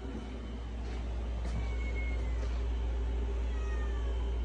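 A steady low hum, swelling slightly over the first second, with two faint, short, high squeaks that fall in pitch, one about halfway through and one near the end.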